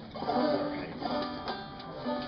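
Acoustic string instruments, an acoustic guitar among them, plucked and strummed loosely, with a few ringing notes that hold for a moment: the band tuning up between songs.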